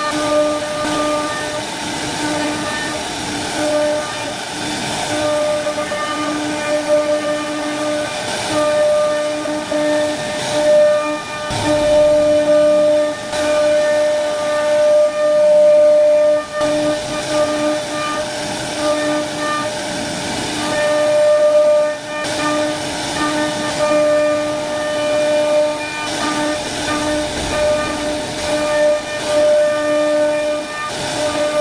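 CNC wood router running: the spindle whines at a steady pitch while the bit carves a relief pattern into a wooden panel, over a hiss of cutting. The whine fades briefly now and then as the cutter moves along its path.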